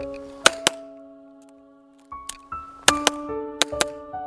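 A tune of held, ringing notes plays throughout, with sharp handgun shots over it: two quick shots about half a second in, then a run of shots from about three seconds in.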